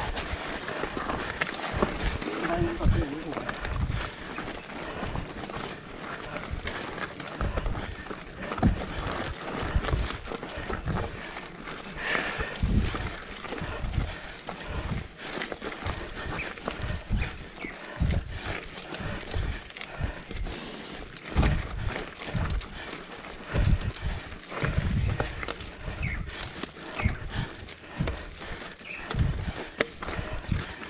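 Mountain bike climbing a loose, wet rocky dirt road: tyres crunching over stones, with many irregular knocks and rattles from the bike as it jolts over the rocks.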